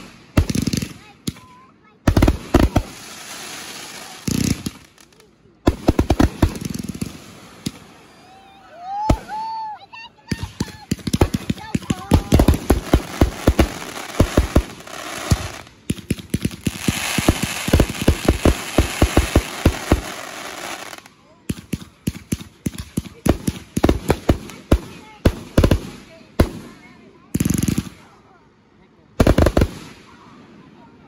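Aerial fireworks going off: volleys of sharp bangs from shells bursting overhead, one after another with short pauses, and a stretch of dense crackling in the middle.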